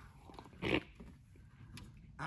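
Quiet handling of a loose wiring harness: faint rustles and a couple of light clicks near the end. About half a second in there is a brief breathy "okay".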